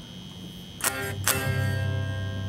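Electric guitar struck twice, about half a second apart, just before the middle; the second chord is left ringing.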